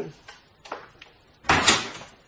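A door being shut as a character leaves the room, one loud short closing sound about one and a half seconds in, after a faint click.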